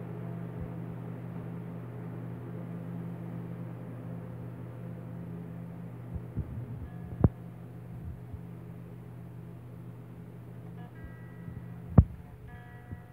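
A steady low hum runs under a baby's hands handling acoustic guitar strings. About six to seven seconds in come a few light knocks and one sharp, loud click, and faint string notes ring after it. More faint string notes ring near the end.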